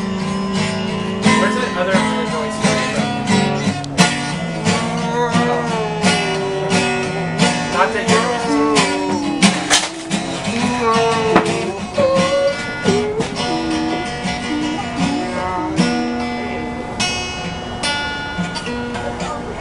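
Acoustic guitar played slowly, strummed and picked. A second melody line slides and wavers in pitch over it from about two seconds in until a little past the middle.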